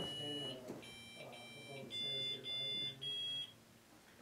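Handheld EMF meters beeping in a run of about six short, high electronic tones, some of them two-toned. The beeping is set off by interference from a walkie-talkie.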